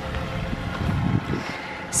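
Wind rumbling on the microphone, in uneven gusts strongest a little before the middle, over a faint steady hum.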